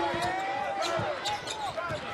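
A basketball is dribbled on a hardwood court, with a few low thuds, while sneakers give short squeaks as players cut and stop.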